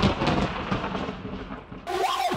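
A rumbling noise effect in a hardstyle dance track fades away, and a synth line comes in just before the end.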